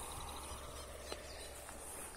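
Faint outdoor ambience in a muddy field: a low, steady background hiss with one soft click about a second in.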